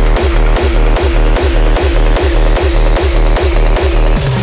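Euphoric hardstyle dance music: a heavy kick drum beats steadily about two and a half times a second (around 150 beats per minute) under a sustained synth layer.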